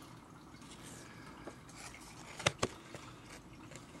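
Handling noise from trading cards and a metal card tin: two quick light clicks about two and a half seconds in, over low room noise.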